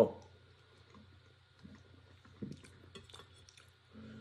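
Mostly quiet room with faint chewing of an air-fried mini pizza and a few soft clicks and taps, one a little louder about two and a half seconds in.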